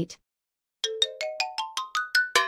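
Synthesized chime sound effect: a quick rising run of short bell-like notes, about ten of them, starting about a second in, as the graph animation draws the guide lines to plot a point.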